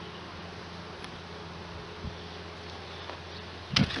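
Honeybees buzzing steadily around an open hive, a continuous hum of many bees. A sharp knock comes near the end.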